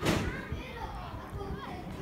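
Children's high voices calling and shouting to one another during a youth football game, with a loud, short burst of noise right at the start.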